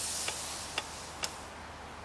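Three faint, sharp clicks about half a second apart over a steady hiss, as a ouija planchette under the sitters' fingers shifts and taps across the board.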